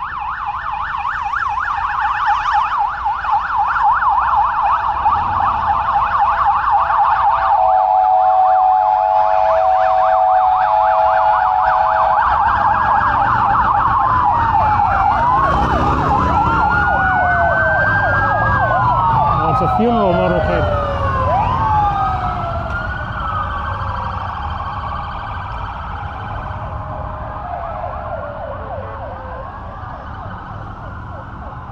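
Police escort sirens of a passing motorcade. A fast warbling yelp comes first, with a steady horn-like tone held for a few seconds about eight seconds in. Then several sirens wail up and down over each other and ease off in the last third.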